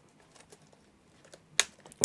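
Replacement laptop keyboard being pressed down into the chassis of an HP Pavilion TouchSmart 15 by fingers on the keys: a few faint clicks and one sharper click near the end as it clips into place.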